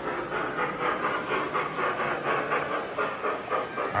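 Electronic steam sound of O-gauge model steam locomotives running: a steady, rhythmic chuffing with hiss.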